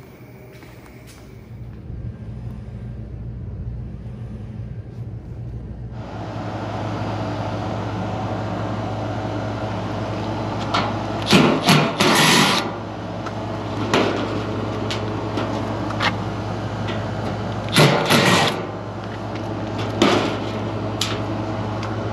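Cordless impact driver running sheet-metal screws out of a condensing unit's steel panel, in three short spells: about eleven seconds in, at about eighteen seconds and at about twenty seconds.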